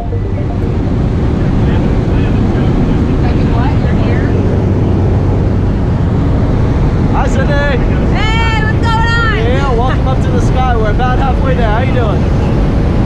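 Loud, steady drone of an aircraft engine and rushing air inside a skydiving jump plane's cabin, with a low hum under it. From about seven seconds in, a person's voice calls out over the noise.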